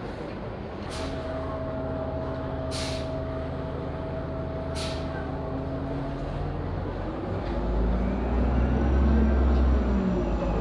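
MTA Orion VII hybrid-electric transit bus idling with a steady drive whine, with short air hisses about a second, three seconds and five seconds in. From about three-quarters of the way through it pulls off, its rumble getting louder and its whine rising as it passes close by.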